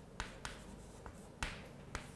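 Chalk writing on a chalkboard: faint strokes with a few sharp taps as the chalk strikes the board, the loudest tap a little before the end.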